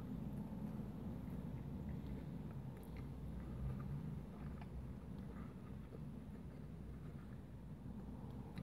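A man chewing a mouthful of burger, faint small wet clicks over a low steady hum.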